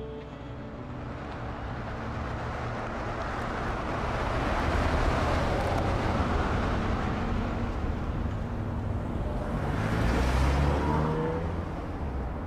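City street traffic: motor vehicles passing close by. Engine and tyre noise swells to a peak about four to seven seconds in, then again about ten seconds in with a rising engine note.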